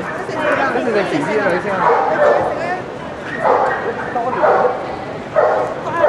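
Dogs barking in short clusters, with people talking underneath.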